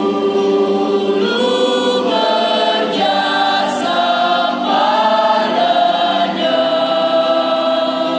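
Mixed choir of men and women singing a hymn in held chords, moving to a new chord every second or so.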